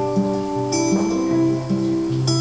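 Acoustic guitar strummed together with an electric guitar, playing a slow instrumental passage with sustained notes and a low line that moves about every half second.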